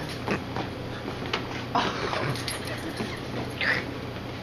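Shoes stepping, kicking and scuffing on a hard floor during a Charleston dance, a few separate knocks and scrapes over a low steady hum, with a brief high-pitched sound near the end.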